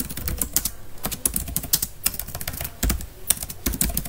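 Typing on a computer keyboard: quick, irregular runs of key clicks.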